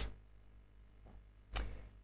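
Near-quiet room tone with a steady low electrical hum, broken about one and a half seconds in by a short sharp intake of breath with a brief fading tail.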